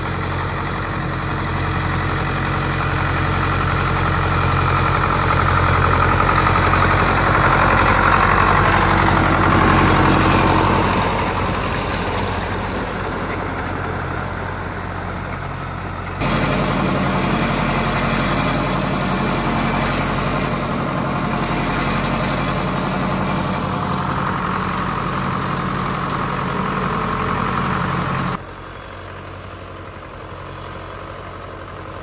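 Ford 861 tractor's four-cylinder diesel engine running as the tractor drives up and past, growing louder and then dropping in pitch as it goes by. It then runs steadily while pulling a box grader over gravel, and is fainter near the end.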